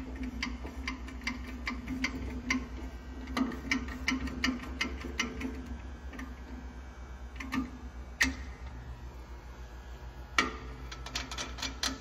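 Hand-operated hydraulic pump of a cam bearing installer being stroked, clicking about two to three times a second as it presses a cam bearing into a small-block Chevy block. A couple of sharper clicks come later, then a quicker run of clicks near the end, over a faint steady hum.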